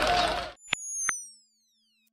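A man's outdoor speech cuts off about half a second in, followed by two short clicks and a high electronic tone falling slowly in pitch: the channel's logo sting.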